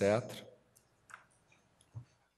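A man's voice trailing off, then a few faint clicks and rustles of a stack of printed paper pages being handled and laid down on a table close to a desk microphone, with a short low thump near the end.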